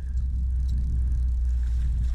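Wind buffeting the microphone: a steady low rumble, with a faint hiss of moving air or water above it.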